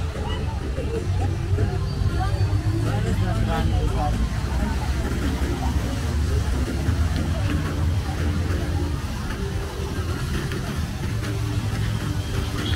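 Busy street ambience: scattered chatter of passers-by over a steady low rumble of road traffic.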